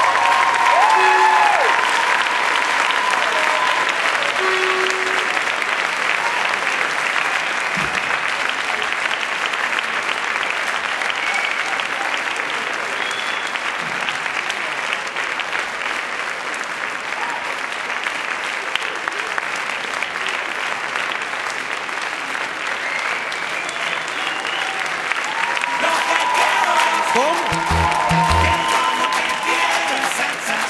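Audience applauding steadily throughout, with scattered shouts and cheers, at the end of a dance performance.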